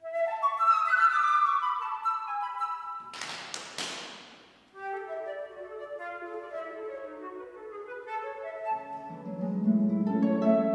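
Concert flute playing the solo opening of a lively tango in quick descending figures, broken about three seconds in by a short, noisy hissing burst with a few sharp strokes. A concert harp comes in with low plucked notes near the end.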